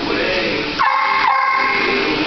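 Husky–malamute mix vocalizing in high-pitched whines, with one strong cry about a second in that jumps up in pitch and holds for about half a second.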